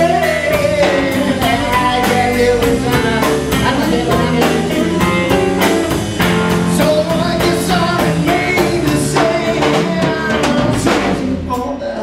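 Live blues band playing: electric guitar, electric bass and drum kit keeping a steady beat, with a singer's voice over them.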